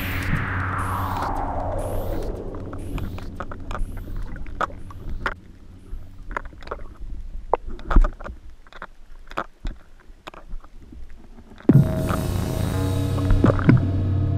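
Background music with a long falling sweep at the start and steady low drones. It thins out to scattered sharp clicks in the middle, and the music comes back in suddenly near the end.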